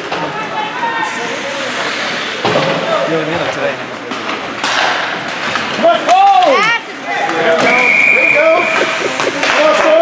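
Rink-side spectators at a youth ice hockey game shouting and calling out over the play, with sharp knocks of sticks and puck against the boards. A short steady whistle sounds about eight seconds in, fitting a referee stopping play.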